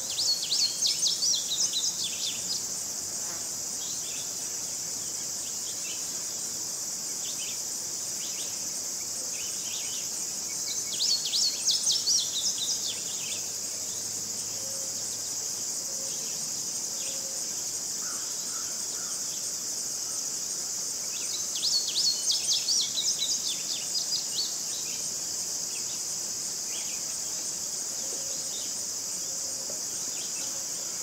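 Steady high-pitched drone of singing insects such as crickets, with a songbird singing three short phrases of rapid repeated notes, one at the start, one about 11 seconds in and one about 22 seconds in.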